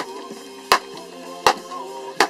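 A baseball smacking into the leather pocket of a Wilson A2000 1786 glove, three sharp hits about three-quarters of a second apart, over background music.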